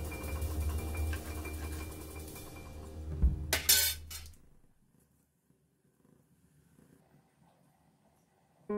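Soft background music for the first half. A steel ladle clinks a few times against a steel plate as it is set down, about three and a half seconds in, and then there is near silence.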